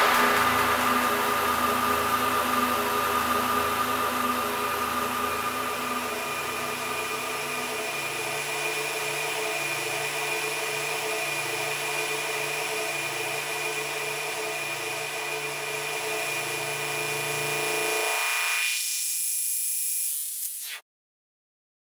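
The closing drone of a dubstep track after the beat drops out: a steady, buzzing electronic hum of several held tones over a hiss. The deepest bass notes fall away about eight seconds in, the remaining bass near the end, leaving a thinning high hiss.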